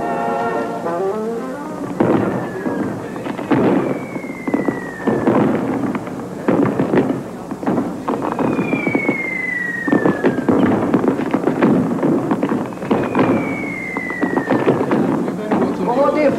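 Fireworks going off over a street crowd: repeated sharp bangs and cracks with three long whistles, each falling in pitch over a second or two.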